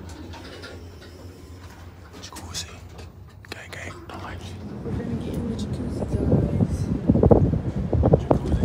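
Faint muffled voices over a low hum, then from about five seconds in, wind buffeting the phone's microphone, growing louder toward the end.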